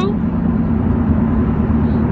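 Steady engine and road noise inside a moving car's cabin: a low, even hum with no distinct events.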